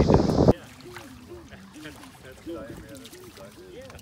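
A man's voice is cut off about half a second in. It gives way to a much quieter stretch of faint distant voices over light water sounds of people wading barefoot in shallow river water.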